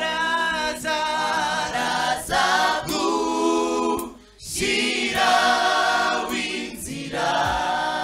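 A large mixed gospel choir singing, its sung phrases broken by a short pause about halfway through.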